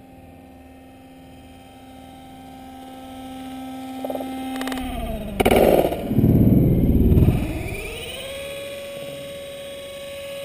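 Small electric motor of a radio-controlled model aircraft, a steady hum that drops in pitch about five seconds in. A loud rough rushing noise follows for about two seconds, then the motor tone rises again and holds steady.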